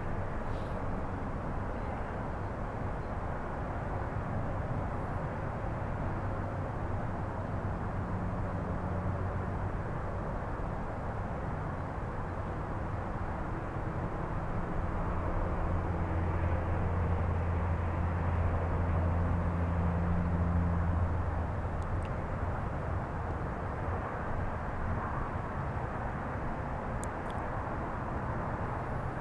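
A distant engine's low, steady drone, swelling about halfway through, holding for several seconds, then fading back.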